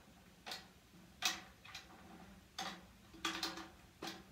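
Light, scattered taps on a snare drum head, about seven in four seconds with a quick cluster of three near the end, each leaving a short ringing tone from the head: the drum being tapped to check its tuning.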